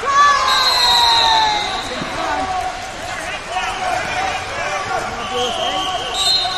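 Wrestling shoes squeaking on the mats in a large hall: many short squeaks, with voices in the background. A steady high tone sounds from about half a second to two seconds in.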